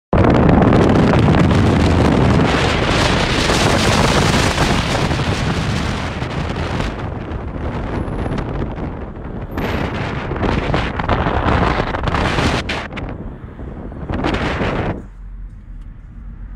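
Wind buffeting the phone's microphone in an open-top car on the move, over road and engine noise. The rush surges and eases unevenly and falls away sharply about a second before the end.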